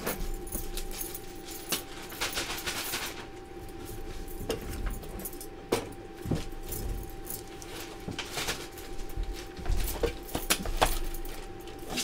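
Scattered clicks, taps and light scrapes of an oyster knife and Akoya oyster shells being handled on a table, with metal bangle bracelets jangling, over a faint steady hum.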